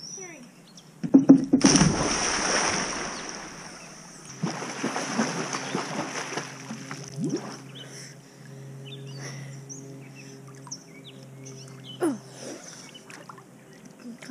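A person plunging off a diving board into a swimming pool: a loud splash about a second in and a few seconds of churning water, then lighter splashing of swimming strokes as she crosses the pool.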